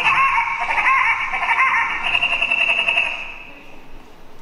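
A clock sound effect played over the theatre speakers: a rapid run of bright, bell-like chiming that fades out about three seconds in.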